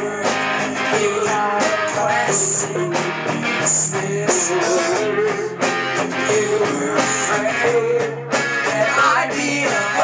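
Live rock band playing: two electric guitars, keyboard and drums, with a steady drum beat.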